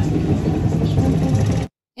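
Loud, dense street noise from a phone recording of a crowd on the move, with a heavy low rumble under it; it cuts off suddenly shortly before the end.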